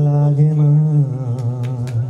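A man singing unaccompanied into a handheld microphone, holding a long low note with a slight waver that steps down once about halfway through.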